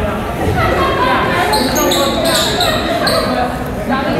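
Basketball players' sneakers squeaking on a hardwood gym floor, several short high squeaks in the middle, with players' voices echoing in a large, mostly empty gym.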